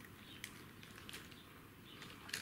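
Near silence with a few faint, short plastic clicks from hands working a wheel of a Kyosho Mini-Z Monster Truck, trying to pull it off its axle.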